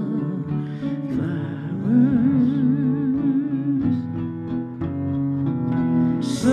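Live folk music on an acoustic guitar and an electric guitar, a slow passage of plucked notes under a sustained melody line with a gentle waver.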